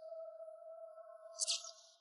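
A soft steady tone, held with a couple of fainter higher tones, that fades out near the end, with a brief hiss about one and a half seconds in.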